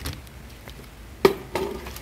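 Hard objects being handled: one sharp clink a little past a second in, with a few fainter clicks around it.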